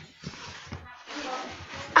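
Rustling and handling noise on a laptop's built-in microphone with a few light knocks, as the child carrying it stumbles and falls on the stairs.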